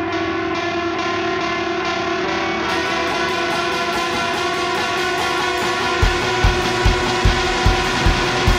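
Indie rock music with sustained guitar chords and no vocals. A high, regular cymbal-like hiss comes in about three seconds in, and a low, steady beat of about two and a half thumps a second starts near the end.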